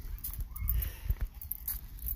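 Footsteps on asphalt while walking, with a low rumble of wind and handling noise on a phone microphone.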